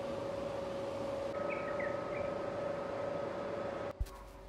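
Steady hum over a noisy background ambience, with a few short bird chirps about one and a half seconds in; the sound cuts off abruptly just before the end.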